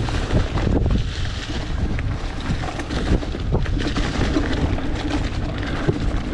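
Mountain bike descending a dirt trail: wind buffeting the microphone over the rumble of tyres on loose dirt, with frequent small knocks and rattles from the bike over bumps.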